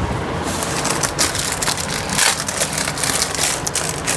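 Plastic packaging crinkling and rustling in the hand: a rapid, irregular run of small crackles as packaged phone covers are handled.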